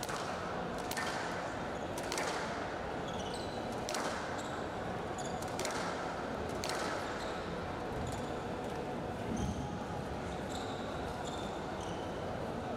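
Squash rally: the ball cracks off rackets and walls about every one to two seconds, each hit ringing briefly in the hall, with short high squeaks of court shoes between the shots. The hits thin out in the last few seconds.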